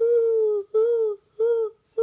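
A girl's high voice calling out "woohoo" four times in quick succession, each call sliding slightly down in pitch.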